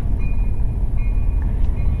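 Steady low rumble of a diesel locomotive moving slowly past a grade crossing as the train pulls out, heard from inside a car.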